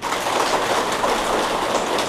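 A large audience applauding, a dense, even patter of many hands clapping.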